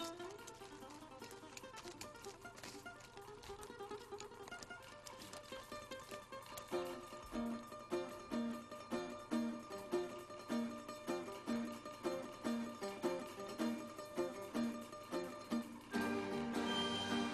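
Background music on a plucked string instrument: soft and sustained at first, then from about seven seconds in a steady, repeating pattern of plucked notes.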